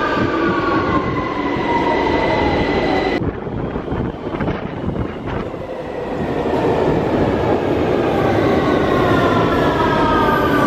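London Underground train pulling into the platform: a loud rumble of wheels on rail with the traction motors' whine falling in pitch as it brakes. The sound eases for a few seconds about three seconds in, then the falling whine returns near the end.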